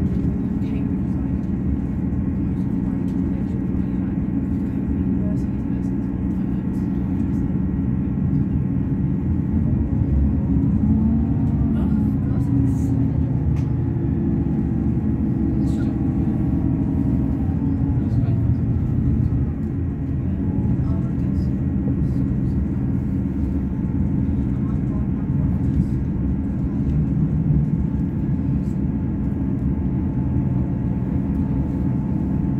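Inside a Class 158 diesel multiple unit under way: the underfloor diesel engine drones steadily over the rumble of wheels on rail. The sound swells a little about ten seconds in and eases again later on.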